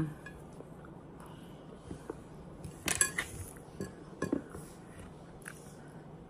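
Plastic fork clicking and scraping against a plate while a cooked sausage is cut and eaten, with a cluster of louder clicks about three seconds in and a few more over the next second and a half.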